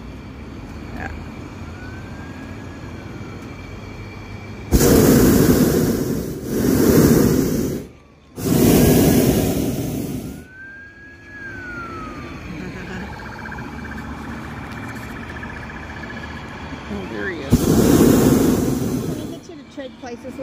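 Hot air balloon's propane burner firing in blasts overhead: three blasts in quick succession about five seconds in, each a second or two long, then another blast of about two seconds near the end.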